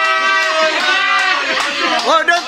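Several people's voices calling out in long, drawn-out sing-song tones that overlap one another, with no break in the sound.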